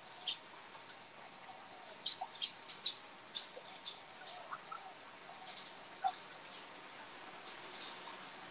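Faint, scattered bird chirps: short high calls, several clustered between about two and three seconds in, over a low steady background hiss.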